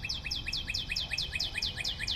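Bird trilling: a rapid, even run of short, high, falling chirps, about ten a second, over a slower series of lower chirps.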